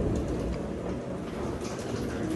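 The freight elevator's metal wire-mesh car gate rattling and rolling along its track, a low, uneven rumble with small clicks.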